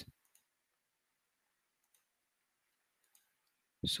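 Near silence, with a few faint computer mouse clicks; a man starts speaking right at the end.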